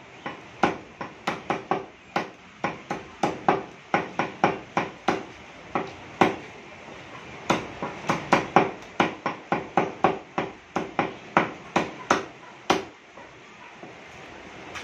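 Meat cleaver chopping raw skinless chicken on a thick wooden log chopping block: a fast series of sharp strikes, about two or three a second, with a pause of about a second near the middle and the chopping stopping shortly before the end.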